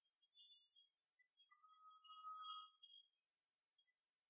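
Near silence: faint hiss with scattered faint high tones, and a faint tone about one and a half seconds in.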